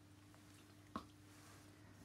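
Near silence with a low steady hum, broken about a second in by one short, sharp knock.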